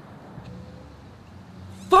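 Quiet outdoor background with a faint low hum, then a man's shouted voice breaks in at the very end.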